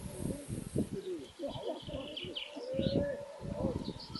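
Outdoor ambience of birds chirping and calling, with indistinct voices of people in the background.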